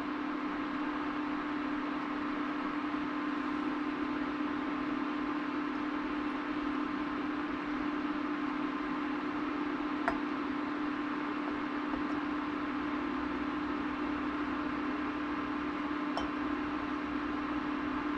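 Steady hum of a running appliance, one low tone over a light hiss that never changes, with a faint click about ten seconds in and another near the end.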